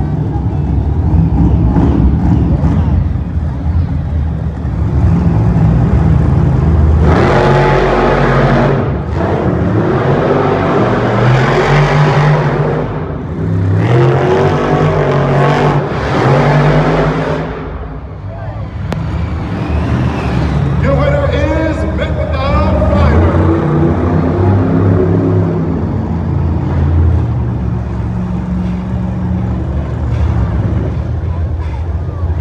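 Two monster trucks' supercharged V8 engines racing around the circuit at full throttle, the engine note rising and falling with the throttle. The loudest surges come between about a quarter and halfway through.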